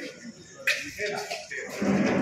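A single sharp metallic clack about two-thirds of a second in, a steel serving ladle knocking against a steel food bucket, over faint voices.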